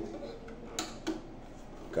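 Handling noise from a banjo being turned over in the hands: two light clicks close together about a second in.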